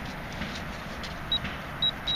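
Metal-detecting pinpointer probed into a dig hole, giving two short high beeps about a second and a half in as it picks up metal in the soil, over a steady low rumble of wind and handling.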